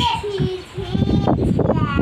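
A young child's high sing-song voice, with a low rough rumble starting about a second in.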